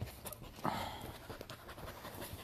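Young border collie panting close to the microphone, with soft rustling and small knocks as she moves about on the couch.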